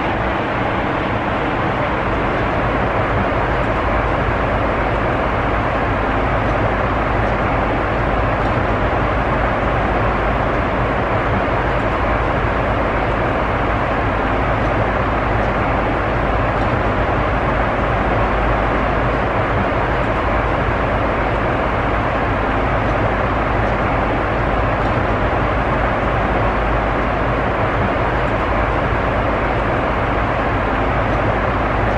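Steady cabin noise of a Boeing 747 in flight: a constant rush of airflow and engine noise over a low rumble, unchanging throughout.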